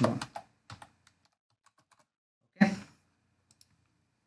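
Faint typing on a computer keyboard: a quick, uneven run of keystrokes as a line of code is edited.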